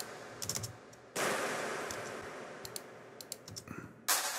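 Big layered clap sample from a dance track, with its attack tamed by a limiter so that a long reverb tail carries it: one hit about a second in that dies away over a couple of seconds, with the end of an earlier hit fading at the start. A few faint mouse clicks fall between the hits.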